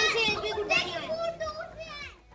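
Children's high-pitched voices talking while at play, growing somewhat quieter toward the end.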